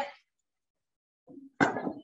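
Speech only: the tail of a spoken word, a second of silence, then a brief spoken "mm-hmm" near the end.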